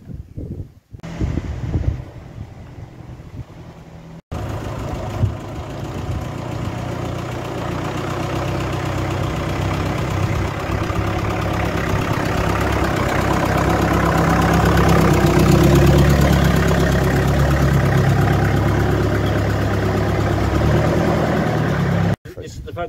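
A vintage grey tractor's engine running as the tractor drives toward and past the camera. It grows steadily louder to a peak about two-thirds of the way through, then eases off a little.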